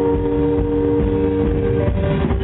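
Live indie rock band playing loudly: a chord of several steady held tones rings over bass and drums, shifting to new notes near the end.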